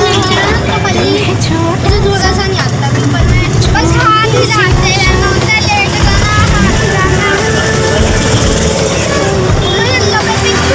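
Steady engine and road rumble heard from inside a moving vehicle, with children's voices talking over it.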